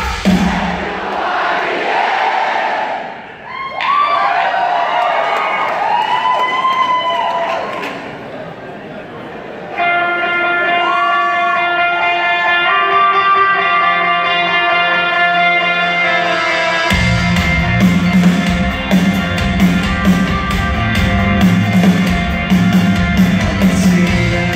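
Concert crowd cheering and singing together. About ten seconds in, an electric guitar starts ringing out steady chords, and at about seventeen seconds bass and drums come in as the live rock band launches into the song.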